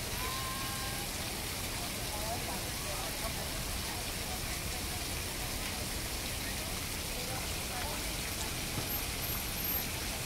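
A steady, rain-like hiss of noise, like falling water, with faint voices murmuring in the background.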